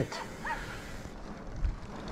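Mountain bike's knobby tyres rolling on asphalt, with wind on the microphone as a low, even rumble; a small low bump near the end.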